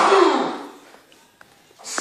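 A man's drawn-out, strained vocal cry with heavy breath in it, falling in pitch and dying away within the first second.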